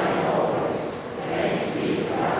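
Speech: a voice talking.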